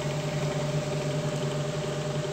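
Steady low hum of a running electric motor or fan, with a constant tone that does not change.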